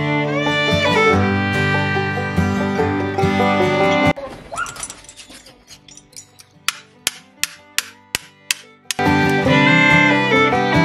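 Fiddle-and-guitar background music that cuts out about four seconds in. In the gap comes a run of sharp knocks, about three a second, from a hammer striking the back of a butcher's knife to chop through a lamb carcass's ribs. The music returns near the end.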